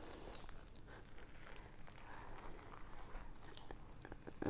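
Faint crackling and small snaps as a scored jackfruit-type fruit is pulled apart by hand, its rind and inner fibres tearing.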